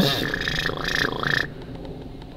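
Beatboxer's mouth sound: a high, held whistle-like tone that dips down in pitch twice, then stops about a second and a half in.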